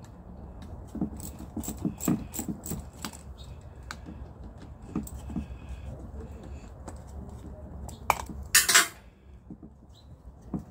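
Scattered light metallic clinks and taps of hands handling parts on a carburetor, with a brief, louder rustling scrape near the end.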